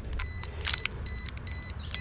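Light clicks and rustling from hands working the wires and tape of an opened lithium battery pack. A faint, high, broken beep-like tone comes and goes through it.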